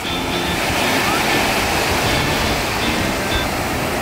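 Sea surf washing in around the boat in shallow water: a steady, loud rush of breaking waves. Faint thin tones sound over it.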